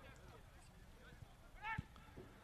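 Faint distant voices calling on and around a soccer field during play, with one short, louder call near the end.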